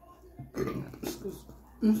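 A woman belching while eating, a low rough burp about half a second in, followed by a shorter second sound.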